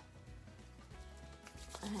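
Faint handling and rubbing sounds of hands working a drop of hair oil between the palms, over quiet background music.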